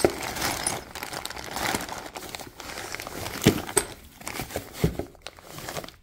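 Plastic parts bags and packing paper crinkling as they are handled in a cardboard box of parts, with a couple of short knocks about halfway through and near the end.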